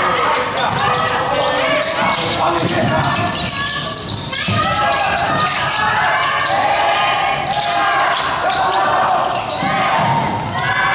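Basketball game sounds: many overlapping voices calling and shouting across the court throughout, with a basketball bouncing on the hardwood floor as it is dribbled.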